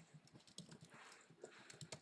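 Faint computer keyboard typing, a scatter of light key clicks.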